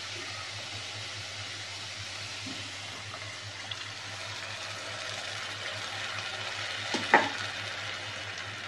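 Grated bottle gourd sizzling steadily in ghee in a hot nonstick pan while cold milk is poured over it. A sharp double knock sounds about seven seconds in.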